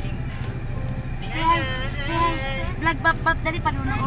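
Steady low rumble of a moving van's cabin, with a woman's voice singing a tune from about a second in.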